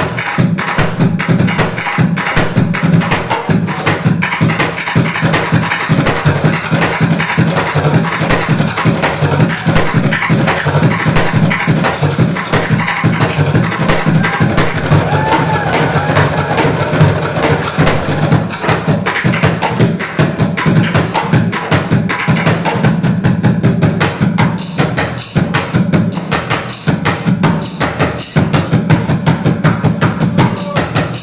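Bucket drumming: wooden drumsticks playing a fast, unbroken rhythm on upturned plastic buckets. Deep hits on the bucket tops mix with sharp clacks on the rims and sides.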